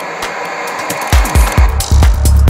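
Dark progressive psytrance: the kick and bassline drop out for about a second, leaving a hissing synth texture, then the kick drum comes back in about a second in and the full rolling bass returns near the end.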